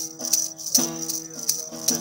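Instrumental break of a folk song: a long-necked, skin-topped gourd lute strummed, sounding a steady drone of a few notes that shift pitch about a second in, over a rattle beating about three times a second.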